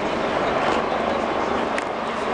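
A loud, steady wash of outdoor noise: a crowd of spectators murmuring, with wind rumbling on the microphone.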